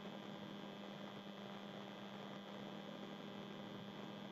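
Faint steady electrical hum with a low, even hiss: the background noise of the recording during a pause in speech.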